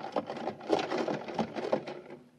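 Radio-drama sound effect of crackling static with irregular clicks, as a set is switched over to the police band.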